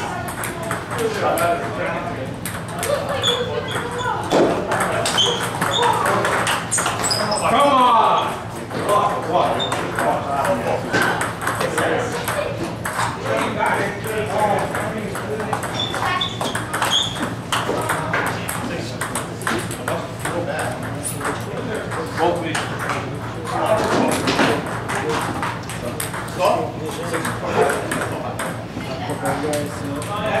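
Table tennis balls clicking off paddles and bouncing on the tables in rallies, many overlapping hits from several tables at once.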